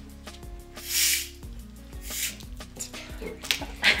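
Gas hissing out in two short bursts as the cap of a plastic bottle of carbonated soda is eased open a little at a time, over quiet background music.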